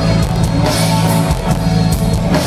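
Live rock band playing loudly with no singing: electric guitar over bass and drums.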